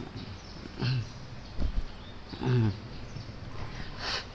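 A man's voice making a few short, low vocal sounds with pauses between, not clear words, then a sudden breathy burst at the very end as he brings a tissue to his face.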